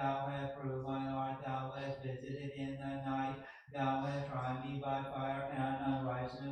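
A male voice chanting liturgical text on one steady pitch, in a monotone recitation, with a short breath break about three and a half seconds in.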